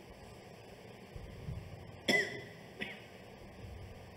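A short cough or throat-clear into a microphone about halfway through, followed by a smaller one a moment later, over faint hall noise.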